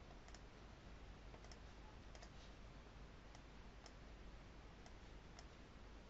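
Faint computer mouse clicks, about seven spread irregularly, over quiet room tone.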